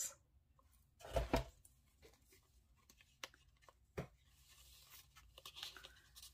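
Paper and card being handled: a short double rustle about a second in, a couple of small ticks, then a soft rustle of paper sliding near the end as a small paper tag is tucked into a paper pocket in a journal.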